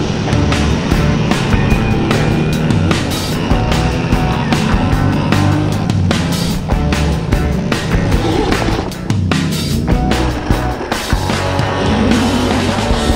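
Rock music with a driving drum beat, loud and steady throughout.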